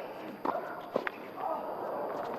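A tennis ball struck sharply twice, about half a second apart, in a quick rally. Then voices rise in the second half.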